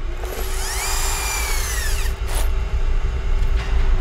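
A small electric motor whines up in pitch, holds for about a second and winds down, over a steady low hum and rumble. A single knock comes shortly after two seconds in.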